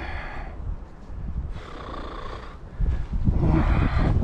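Wind buffeting the microphone in gusts, stronger near the end, with a short breathy rush of air about halfway through.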